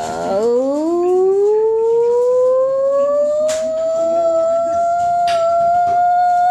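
A single long pitched tone that glides slowly upward for about three seconds, then holds steady at one pitch, with two faint clicks partway through.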